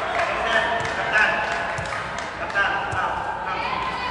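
Voices echoing in an indoor arena, with a few short knocks of a sepak takraw ball bouncing on the court around the middle.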